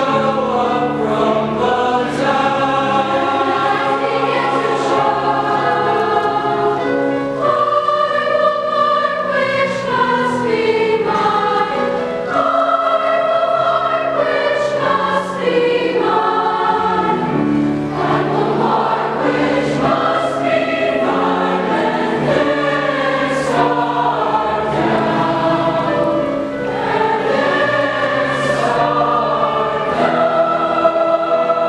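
Large mixed choir of men's and women's voices singing in parts, with long held chords that change every second or two.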